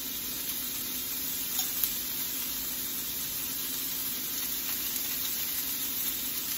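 Chopped tomatoes and sliced onion sizzling steadily in hot oil in a stainless steel wok.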